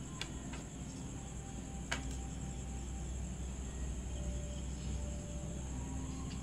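Steady low background hum and hiss, with a few faint clicks and taps of small electronic parts being handled on a wooden tabletop in the first two seconds.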